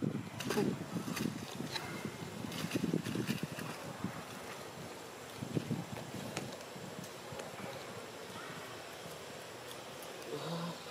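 Light crackling and rustling of dry leaf litter as monkeys move about on it, over a soft outdoor wind haze. Busier in the first four seconds, then mostly a quieter steady haze with an occasional click.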